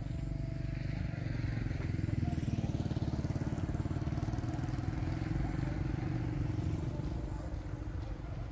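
Small motorcycle engine running as the bike rides slowly along the road, getting louder about a second in and easing off near the end.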